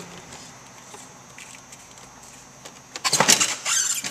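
Snowmobile's plastic air box being pulled loose and lifted off the carburettors: quiet handling at first, then a loud burst of rattling and clunking about three seconds in as it comes free.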